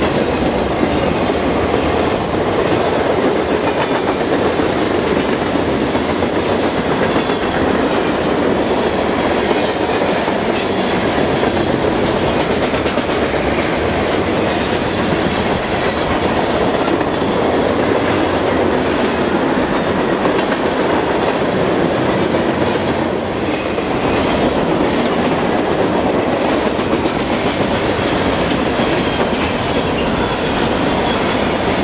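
Freight cars of a mixed freight train rolling past close by: a steady loud rumble of steel wheels on rail, with the wheels clicking over the rail joints.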